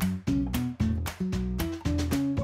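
Background music: short pitched notes over a steady beat.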